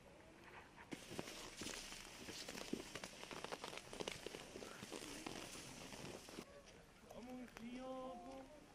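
Faint footsteps on a wet, snow-covered path, a run of soft clicks and scuffs over a light hiss, with distant voices near the end.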